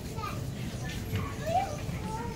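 Grocery store background: faint voices of other shoppers, with a child's voice among them, over a low steady hum.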